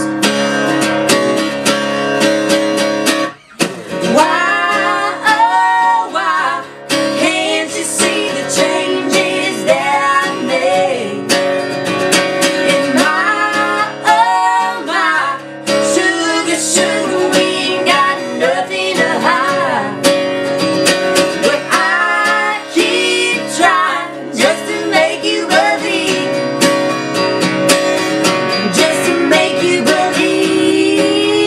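Acoustic guitar strummed as accompaniment to a woman singing a slow song, with a man's voice singing as well partway through.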